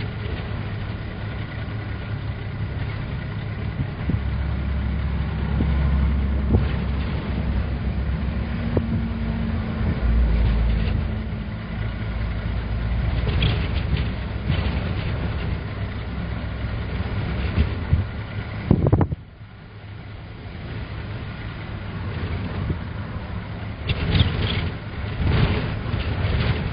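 Strong gusty wind rumbling on the microphone and buffeting a vehicle, over steady vehicle noise. The rumble swells and eases, drops off briefly after a sharp knock about nineteen seconds in, then builds again.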